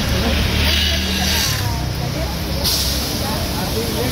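Street traffic by the sidewalk: a steady low rumble of vehicles with background voices, broken by two spells of hiss, one about a second in and one starting about two-thirds of the way through.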